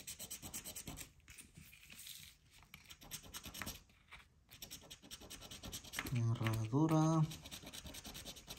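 A scratch-off lottery ticket being scratched in quick, repeated short strokes. A brief low voice sounds about six seconds in.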